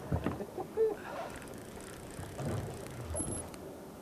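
Deck ambience of a fishing boat at sea: a low, steady noise of wind and water, with a few brief knocks and faint voices.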